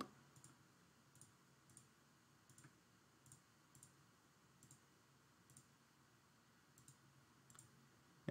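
Faint computer mouse clicks, a dozen or so spaced irregularly and some in quick pairs, over near-silent room tone.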